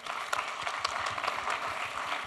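Audience applauding, many hands clapping together.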